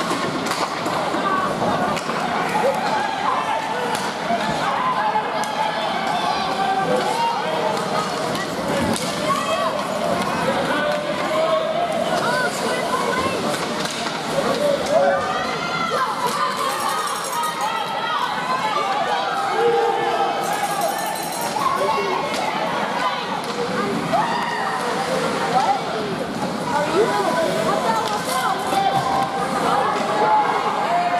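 Spectators in an ice rink talking and calling out, many voices overlapping at a steady level with no one voice standing out.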